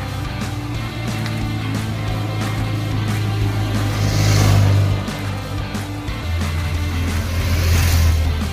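Background music with a steady beat, over which two motorcycles pass close by, one about four seconds in and another near the end. Each pass is heard as engine noise that swells and fades.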